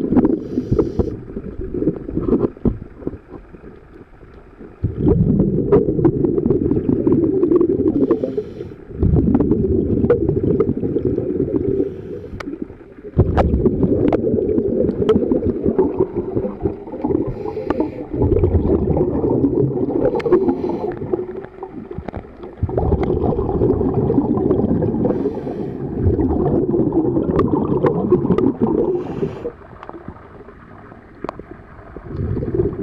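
Underwater sound of a scuba diver's breathing: exhaled bubbles from the regulator bubble loudly for several seconds at a time, about six times, with brief pauses and short hisses of inhalation between them. Scattered knocks and scrapes come from a gloved hand working at the marine growth on the hull.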